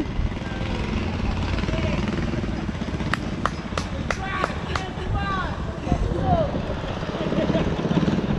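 Low steady drone of the 212cc engine on the kayak out on the river, with excited voices. A run of about six sharp clicks, roughly three a second, comes in the middle.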